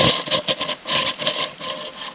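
Handheld twist-type bait grinder being turned to crush hard boilies, giving a gritty crunching and rattling in short uneven bursts that thin out near the end.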